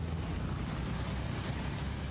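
Street traffic with motorcycles and cars passing, a steady low rumble.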